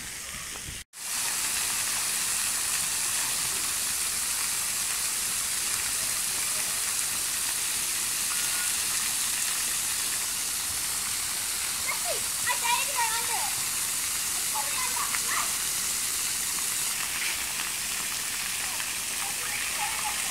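Splash-pad water jets and fountains spraying, a steady hiss of falling water, which starts after a brief cut-out about a second in. Children's voices are faintly heard now and then in the second half.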